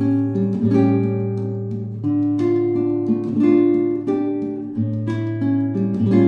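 Background music: plucked and strummed acoustic guitar, a run of sustained chords and notes.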